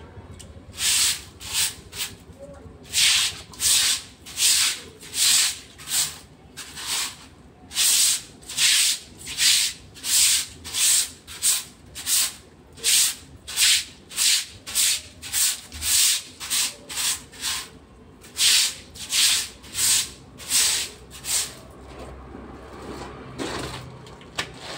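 A stiff-bristled broom sweeping wet ground in repeated scraping strokes, about one and a half a second, in runs with two short breaks, stopping a couple of seconds before the end.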